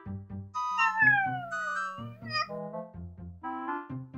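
Background music with short steady notes, and a cat meowing once about a second in: one long meow that falls in pitch, louder than the music.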